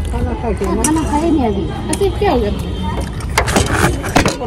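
Voices talking throughout, with a burst of rustling and knocks near the end as the phone is handled.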